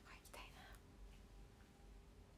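A woman's brief, soft, breathy laugh in the first second, then near silence over a faint steady hum.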